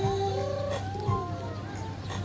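A large flock of feral pigeons cooing in short, rolling calls, with a steady low hum underneath.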